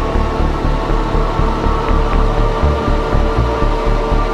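Electronic synth music: a rapidly pulsing bass line, about four to five beats a second, under sustained synth chords, with faint light ticks on top.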